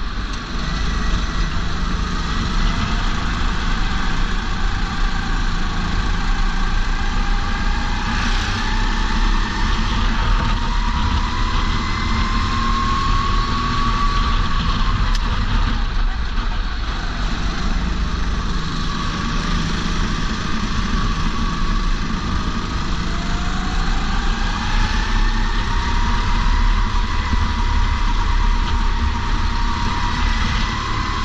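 Racing kart engine heard from the driver's seat, its pitch climbing steadily as the kart accelerates, dropping sharply about halfway through as it slows for a corner, then climbing again. A heavy low rumble of wind on the helmet-mounted camera runs underneath.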